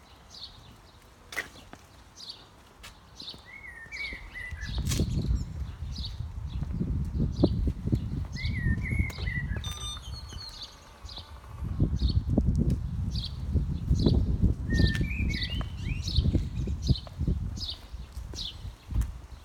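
Birdsong: a bird repeats a short high chirp over and over, roughly one or two a second, with a few brief warbling phrases from another bird. From about four seconds in, a low rumbling noise rises and comes and goes under the birdsong.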